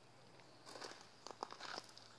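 Faint rustling and crunching with a scatter of light crackles and clicks, starting just under a second in.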